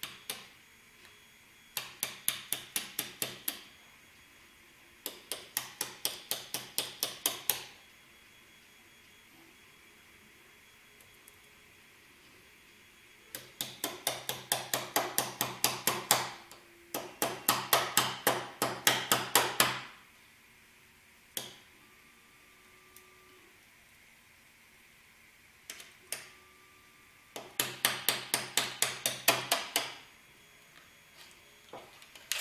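Small adjustable wrench tapping the edge of a large 3D print on a printer's build plate to knock it loose: runs of quick light taps, about six a second, each run two to three seconds long, five runs in all with a few single knocks between.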